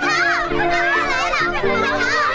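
Several high-pitched cartoon voices cry out in alarm at once, their pitch wavering up and down, over background music with held notes.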